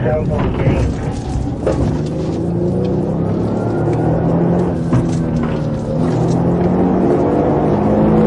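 Police cruiser's engine and road noise heard from inside the car as it drives during a pursuit: a steady engine drone with held tones over constant tyre noise.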